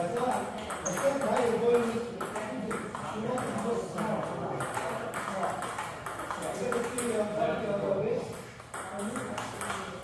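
Table tennis ball making repeated sharp clicks as it is struck by the paddles and bounces on the table, at an irregular rally pace.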